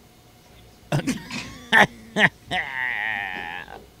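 A man coughs and sputters several times, then lets out one long, high-pitched, wavering groan of about a second. It is his reaction to the burn of a ghost pepper he has just eaten.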